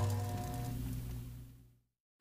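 Short intro music sting: a sudden chord with a strong deep low note that fades away over about a second and a half.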